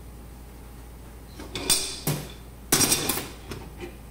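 Metal clanks and scraping from a large adjustable wrench on the steel pipe fittings of an autoclave's pressure regulating valve, in two short clusters about one and a half and three seconds in, the second louder, followed by a few light clicks.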